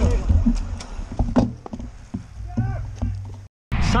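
Wind rumbling on an outdoor microphone beside a bike race, with scattered knocks and short bursts of spectators' voices, cutting off abruptly just before the end.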